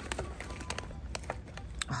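A few light, sharp clicks and taps as small objects are handled and knocked together in a box of purses, over a low steady background hum.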